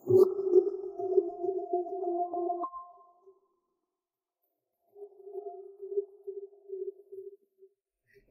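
Background music: a held electronic tone with a couple of higher tones above it, lasting a little under three seconds. After a pause of about two seconds comes a second, quieter held tone that fades out near the end.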